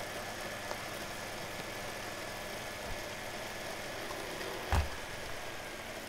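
Steady background hum and hiss of the recording room, with one short, dull knock about three-quarters of the way through.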